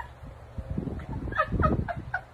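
Women laughing hard in short, high-pitched, breathless bursts that grow louder in the second half.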